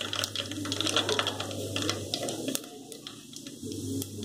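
Mustard seeds crackling in hot oil in a metal pot: a quick, irregular run of sharp pops and ticks, thinning out for a moment past the middle.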